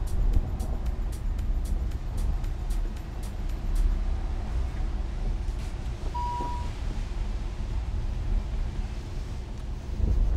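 Lamborghini Huracán Evo Spyder's V10 running while driving with the roof open, a steady low rumble with wind and road noise, under background music whose ticking beat stops about four seconds in. A short beep sounds about six seconds in.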